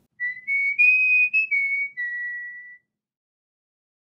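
A short whistled intro jingle: a tune of about six notes that climbs, then steps back down to a lower note held longest, ending about three seconds in.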